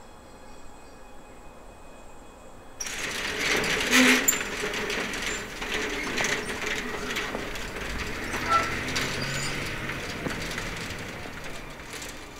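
Metal roller shutter rolling up: a long, dense metallic rattle that starts suddenly about three seconds in, is loudest a second later, and slowly fades over the next seven seconds or so.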